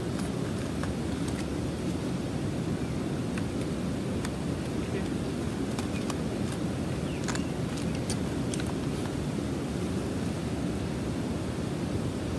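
Steady low rushing noise of river water and breeze, with a few faint light clicks of fishing tackle being handled.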